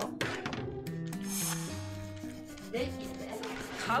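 Kitchen knife slicing open the plastic packaging of a raw whole chicken: a scraping rustle of blade on plastic during the first second or two, over background music.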